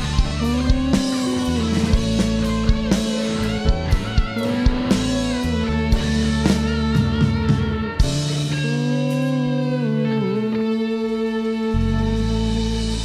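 Live band instrumental break: an electric guitar plays sustained, bending lead notes over bass, keys and drums. The drum hits stop about eight seconds in while the held notes ring on.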